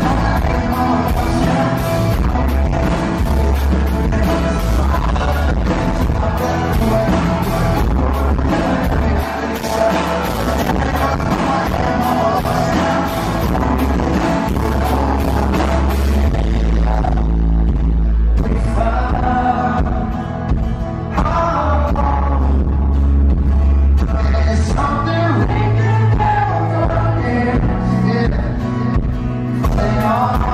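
Live rock band playing a song: a male lead singer with acoustic guitar, backed by drums and electric bass. About halfway through, the bright, splashy top of the sound drops away, leaving voice, guitar and bass.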